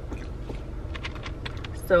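Light clicks and rustles of a takeout food container and food being handled, over a steady low rumble inside a parked car's cabin.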